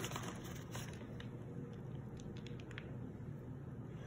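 Shredded cheddar cheese being shaken from its bag and scattered by hand onto a pizza: a faint, light patter with a few soft clicks.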